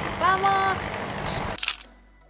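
Wind and boat noise with a short bit of voice, then a camera-shutter click about one and a half seconds in as the sound cuts off.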